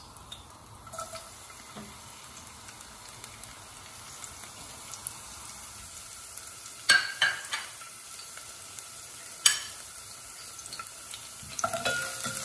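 Sliced garlic sizzling steadily in hot oil in a stainless steel pot, with a few sharp knocks about halfway through. Stirring with a spatula starts near the end.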